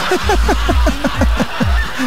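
A person laughing in a quick run of short 'ha-ha' bursts, about six a second, in reaction to a joke. It is heard over a weak FM radio signal, with a steady hiss.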